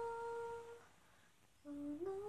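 A woman humming a tune: a rising phrase ends on a long held note that stops just under a second in, and after a short pause a new phrase begins near the end.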